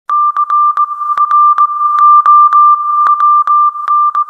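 A steady, high-pitched electronic beep tone, broken again and again by short clicks at uneven intervals, as the intro of a pop song.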